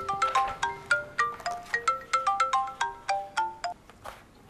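Mobile phone ringtone: a quick melody of short, bright notes, about five or six a second, that cuts off abruptly just before the end when the call is answered.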